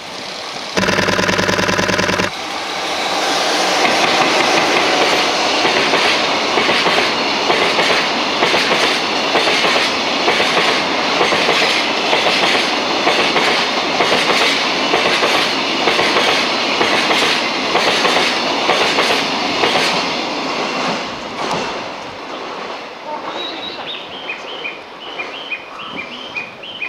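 An EF66 electric locomotive sounds its horn in one blast of about a second and a half. It then passes hauling a long train of tank wagons, the wheels clattering in a steady rhythm over the rail joints. The noise fades near the end, and birds chirp.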